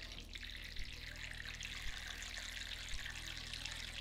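Water pouring in a steady trickle from a watering can into a plastic seed-starting tray of growing-medium pellets, with a few faint clicks.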